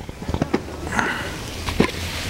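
A pan of wilted spinach and onion sizzling on the stove, with a few light clicks as a plastic blender jar and its lid are handled.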